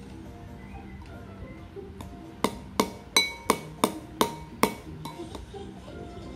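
A spoon clinking against a ceramic bowl, seven quick ringing clinks about three a second in the middle, as a toddler scoops food. Faint cartoon music from a TV underneath.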